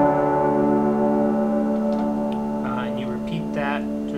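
A piano chord held and slowly dying away, its notes ringing steadily after the keys were struck. A man starts speaking over it about two-thirds of the way through.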